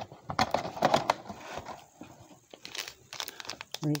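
Foil packs of Panini Mosaic basketball cards crinkling as they are handled and taken out of the box, with a run of quick crackles in the first second and sparser, quieter rustling after.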